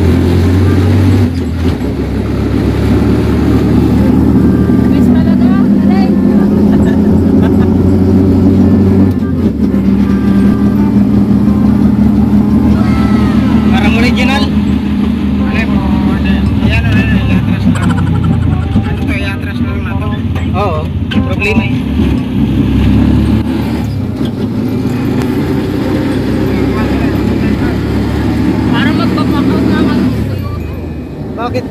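Mini jeepney engine running while driving, heard from inside the passenger cab; its pitch steps a couple of times, about a second in and again about nine seconds in.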